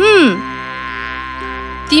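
Cartoon bee-wing buzzing, a steady buzz over soft held background music. It opens with a short falling-pitch vocal sound.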